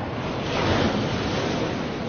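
A steady rushing noise, loudest a little under a second in.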